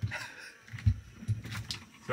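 Handling knocks and clicks as a cordless drill is worked loose and lifted out of a freshly drilled hole in a boat hull, with soft breathy chuckles.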